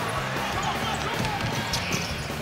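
Basketball arena crowd noise, with a ball being dribbled on the hardwood court.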